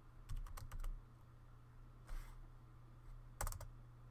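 Typing on a computer keyboard: a quick run of several keystrokes in the first second, a pause, then another short burst of keys near the end, over a steady low hum.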